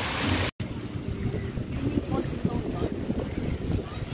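Low wind noise buffeting the microphone outdoors, with faint voices in the distance. It opens with a brief even hiss of water falling down a fountain's cascade wall, cut off by a sudden short dropout about half a second in.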